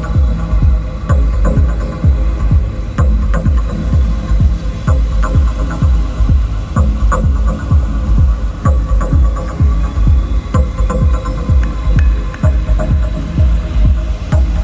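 Deep, hypnotic techno track: a steady kick drum about twice a second under a droning bass and sustained synth tones.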